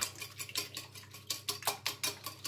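Wire whisk beating eggs in a ceramic bowl, its metal wires clicking rapidly and evenly against the bowl, about five strokes a second.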